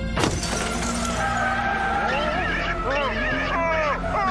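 A sudden smash just after the start, followed by a person yelling with a pitch that rises and falls in arcs.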